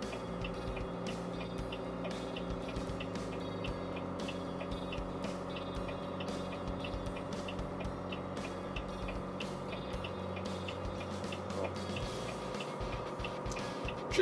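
Heavy truck's diesel engine in the cab, running steadily on a downhill grade with the engine brake engaged in position two at about 1,700 rpm, holding the truck's speed without the service brakes. A steady drone with a fast ticking over it; the deepest part of the drone drops away near the end.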